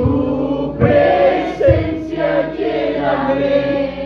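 A congregation singing together in worship, many voices at once.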